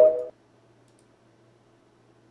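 The tail of TikTok's end-screen sound: a few short rising electronic notes that stop within the first third of a second. Near silence follows, with a faint low hum.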